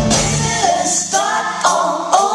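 Live band music with drums stops about half a second in. A woman then sings into a stage microphone almost alone, with a couple of sharp percussion hits.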